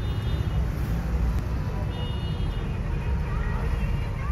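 Steady low road rumble inside a moving car's cabin, with two brief high-pitched tones about two seconds apart.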